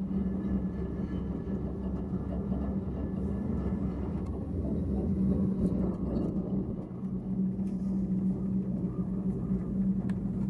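Steady low rumble and hum of a gondola cabin travelling along its cable, with a constant pitched drone underneath. Some higher tones drop out about four seconds in, and the rumble eases briefly around seven seconds in as the cabin passes a lift tower.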